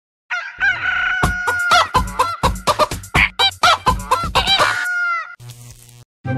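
Chicken clucking and crowing sounds set over a regular drum beat, as a short jingle that stops about five seconds in, leaving a fainter sustained tone.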